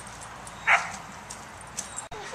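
An Akita barks once, a single short, loud bark less than a second in.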